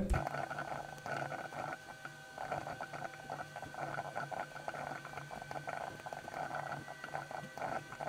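Computer keyboard typing: a dense, irregular run of light key clicks over a faint steady hum.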